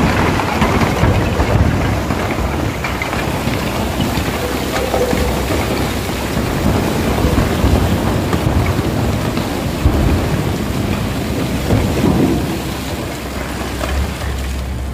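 A truckload of hard iron ore pouring off a tipped dump body into a gyratory crusher's feed hopper: a dense, continuous rush of rock and earth sliding, with lumps knocking as they land, easing off a little near the end.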